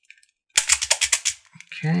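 Plastic beads of a Hasbro Atomix moving-bead puzzle rattling and clicking in their tracks as a ring of the ball is turned, a quick run of clicks lasting about a second.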